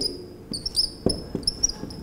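Whiteboard marker squeaking against the board in a series of short, high strokes as figures are written, with a few faint taps.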